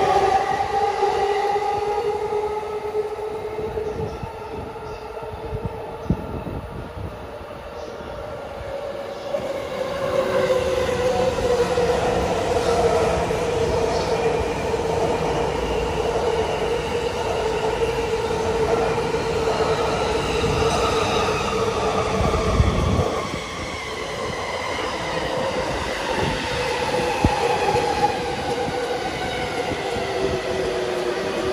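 Electric commuter trains, including a JR East E233 series, running past on the tracks. A motor hum slides up and down in pitch over the rumble of wheels on rail, with clicks at the rail joints. The level drops suddenly about two-thirds of the way through.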